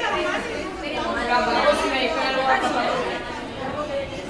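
A group of schoolchildren chattering, several voices talking over one another at once, with no single voice clear.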